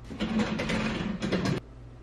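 Furniture being slid across the floor as it is shifted into place: a scraping, rattling drag lasting about a second and a half that stops suddenly.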